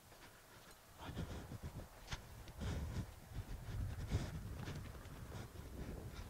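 Faint, irregular hoofbeats of a Moriesian stallion trotting on a sand arena, moving up into a canter near the end.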